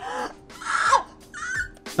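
A woman's short, pained cries and shrieks, the middle one falling in pitch, as her sunburned skin is touched, over soft background music.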